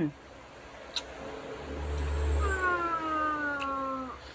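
A long hummed "mmm" from a person eating fruit. It starts about a second and a half in, holds for about two and a half seconds and sinks slowly in pitch, with a small click about a second in.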